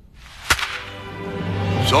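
Opening of a beer commercial's soundtrack played over auditorium speakers: a rising whoosh with one sharp crack about half a second in, then music swelling louder.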